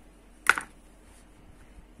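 A single sharp click about half a second in, with quiet room tone around it.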